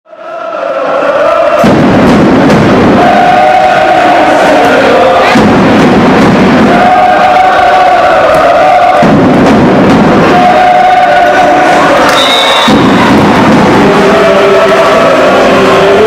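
Crowd in a volleyball hall chanting together in a repeating cycle roughly every three and a half to four seconds, each cycle a low surge of noise followed by a held sung note; the sound fades in over the first second.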